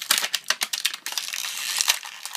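Hard plastic blister packaging crackling and clicking as small toy figures are pried out of it by hand. The first half is a run of separate clicks, and the second half turns into a denser crinkling.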